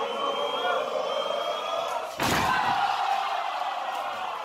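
A heavy slam about halfway through as wrestlers crash down from the top rope onto the ring mat, with the live crowd's noise swelling right after it. Crowd chatter fills the rest.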